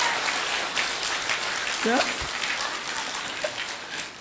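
Audience applause, an even patter that fades gradually, with a brief voice sound about two seconds in.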